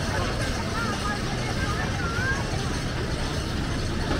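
Phoenix wooden roller coaster train rumbling steadily along its track, under people talking.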